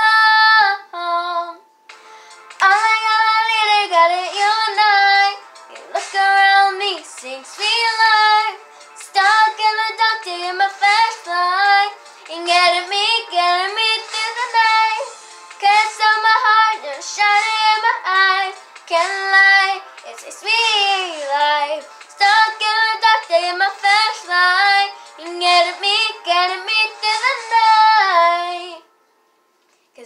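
A young girl singing a pop song solo, with no accompaniment, in phrases separated by short pauses. She falls silent shortly before the end.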